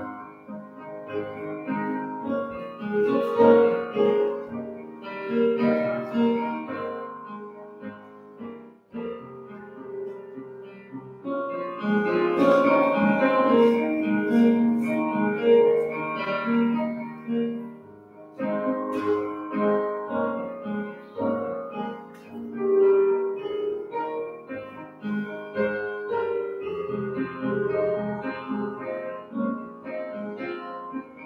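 Electric keyboard playing a hymn tune through once as an introduction, in phrases with short breaks between them.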